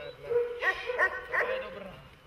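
A dog whining, with about four short, high-pitched yelps in quick succession, dying away near the end.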